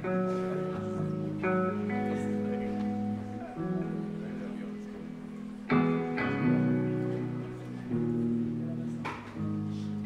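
Live guitar music: slow chords strummed and left to ring, a fresh chord struck every second or two with a louder one about six seconds in.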